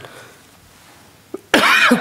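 A man's single loud cough about one and a half seconds in, after a stretch of quiet room tone with a faint click just before it.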